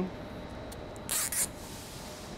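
A plastic cable tie pulled tight through its ratchet around a bundle of hydraulic hoses: one short, hissing rasp about a second in.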